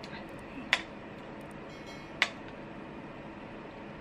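Ceramic spoon clinking against a glass bowl twice, about a second and a half apart, while scooping up a rice ball, over a steady low room hum.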